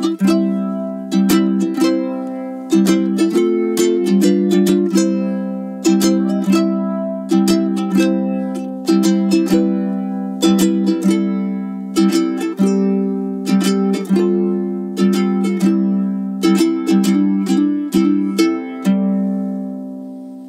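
KoAloha KTM-00 solid koa tenor ukulele, strung with an unwound low G, being strummed: a continuous run of chords, each strum a sharp attack that rings and fades before the next.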